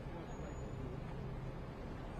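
Steady low rumble of city street traffic, with a constant low hum running underneath it.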